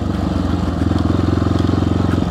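1994 Honda XR650L's single-cylinder four-stroke engine running under way, its firing pulses coming fast and even and slowly growing a little louder.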